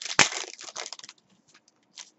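A foil trading-card pack wrapper torn open and crinkled by hand. A sharp rip comes about a quarter second in, followed by a second of crackling that trails off into a few faint clicks.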